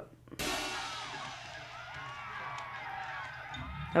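Movie soundtrack playing quietly: music with cymbals and drums that comes in suddenly a moment in, under a dense wash of sound with many wavering pitches.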